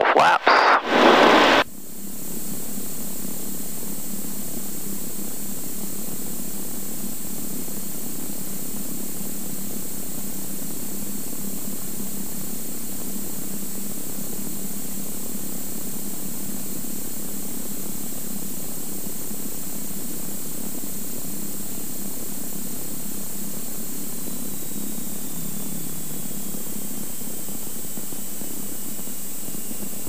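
Cirrus SR22's six-cylinder piston engine and propeller droning steadily in the cabin on short final, with a loud, brief burst of noise in the first two seconds. A faint whine holds one pitch and then falls steadily over the last few seconds as power comes back for the landing.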